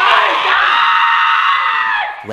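High-pitched screaming held steady for about two seconds, cutting off near the end.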